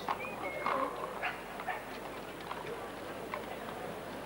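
Horses' hooves clopping on a hard road, a few irregular strikes, over indistinct crowd chatter.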